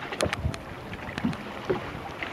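Lake water lapping and splashing against the hull of a small boat, with a few short, light knocks.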